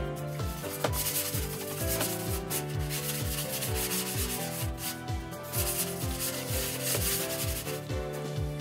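Rusty steel roof flashing being rubbed down by hand for surface preparation before rust-preventive primer, a loud rasping scrape in long runs of a second or two with short breaks, over background music with a steady kick-drum beat.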